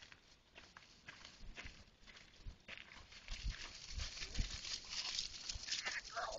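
Hooves and footsteps rustling and crunching through dry fallen leaves as a small flock of sheep is driven along. The sound is faint at first and gets louder over the second half as the sheep come close.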